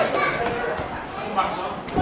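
Several voices of players and spectators calling out on a football pitch just after a goal, short shouts without clear words over outdoor background noise.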